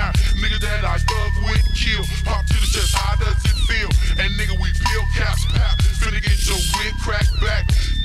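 Screwed (slowed-down) hip hop track with heavy bass and slowed rap vocals.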